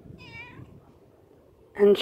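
A cat gives one short, faint meow near the start.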